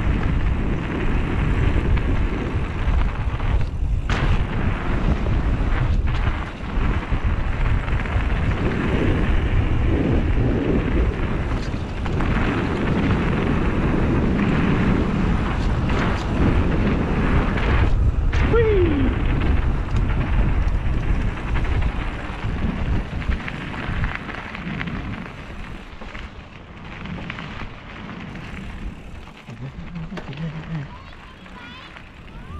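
Wind rumbling over an action camera's microphone and knobby tyres running on a dirt trail as a mountain bike rides singletrack. The rumble eases over the last several seconds.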